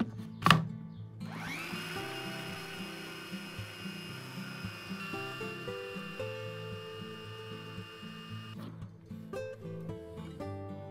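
Bosch MaxoMixx hand-blender motor, clicked onto its chopper bowl lid, starts with a rising whine about a second later and runs steadily for about seven seconds, chopping aloe vera gel, then cuts off suddenly. Guitar music plays quietly underneath.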